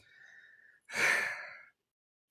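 A woman breathes in quietly, then lets out a sigh about a second in, a breathy exhale that fades away. It is an emotional sigh: she is moved by the message she is relaying.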